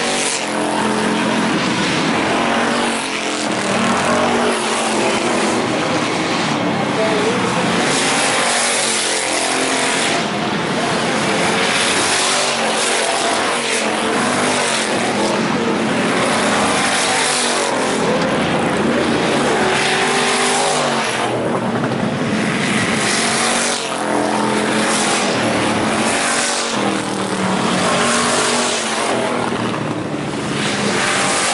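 A field of IMCA Hobby Stock race cars running laps on a dirt oval, their engines rising and falling in pitch as cars come past and fade away.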